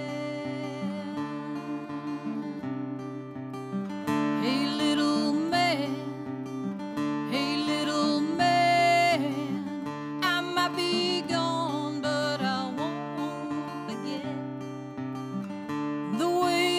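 A solo acoustic guitar plays with a woman singing over it, live. The guitar plays alone for the first few seconds, then she sings several phrases.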